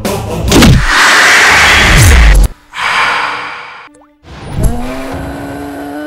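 Movie-trailer music and sound effects: a loud rushing whoosh over the score for about two and a half seconds, ending on a falling tone and cutting off suddenly. After a short fading swell and a gap, a held low note sounds through the second half.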